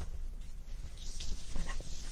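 Cotton tea towel rustling as it is handled and spread out, a soft hiss of fabric strongest about a second in.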